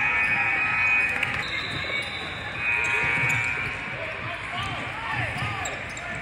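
A basketball bouncing on a hardwood court and sneakers squeaking as players cut and stop, with several short squeals near the end, over the chatter of voices in a large gym.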